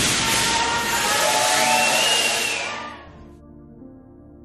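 Loud rushing noise from the on-location sound of crowded horses, with a brief high tone rising and falling partway through. It fades out about three seconds in, leaving quiet ambient music.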